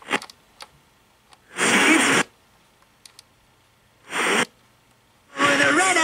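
iHome iH6 clock radio being tuned across the FM band with its jumpy tuning control. A few small clicks, then two short bursts of radio sound with near quiet between them, and near the end a station's broadcast comes in and keeps playing.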